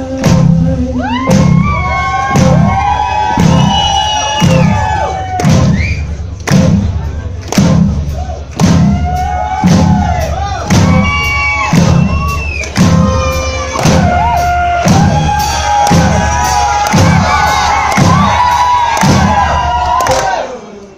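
Live rock band playing loud, with a heavy drum beat about once a second under electric guitar lines that bend and slide up and down in pitch.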